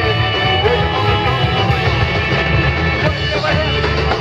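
A live rock band playing loud and continuously, with electric bass, electric guitar, drums and keyboard.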